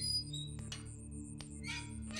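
Low, sustained film-score drone holding steady under the scene, with a couple of faint sharp clicks and a short raspy scrape near the end.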